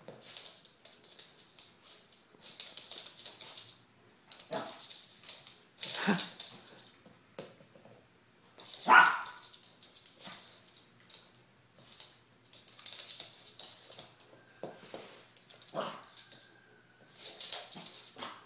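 A small Maltipoo dog barking in a few short yaps, the loudest about nine seconds in. Between the barks come bouts of rattling and knocking as the hollow plastic Kong Wobbler treat toy is nosed and tips back and forth on a hardwood floor.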